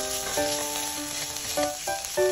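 Tuna cubes frying in oil in a pan, sizzling as a silicone spatula stirs them, under background music of held notes that change about every half second.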